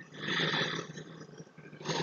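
A big cat's roar, a short hoarse snarl lasting about a second, played as a sound effect.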